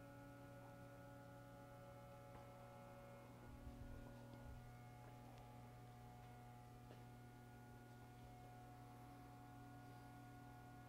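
Near silence: a faint, steady electrical hum made of several held tones, with a soft low bump about four seconds in.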